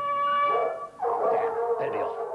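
A person howling like a dog: one long held note that breaks off just before a second in, followed by a second, slightly lower and more wavering howl.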